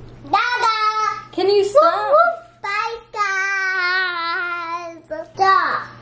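A young boy singing in a high voice: a few short phrases, then one long held note of about two seconds, ending with a short falling call.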